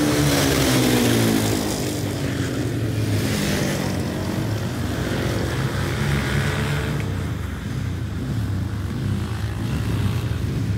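Ice speedway motorcycles, single-cylinder racing bikes, running laps on the track. One passes close early on, its engine note falling as it goes by, and the others keep running steadily after it.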